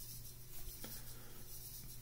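Quiet room tone: a low steady hum with faint rustling or rubbing.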